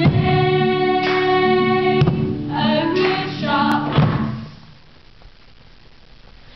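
Singing with musical accompaniment: held notes that change about once a second, breaking off about four and a half seconds in.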